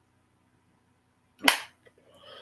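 Near silence, then a single loud, sharp impact about one and a half seconds in, dying away quickly.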